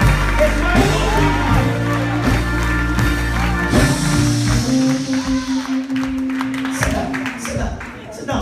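Church music with held chords and a steady bass, with congregation voices shouting praise over it.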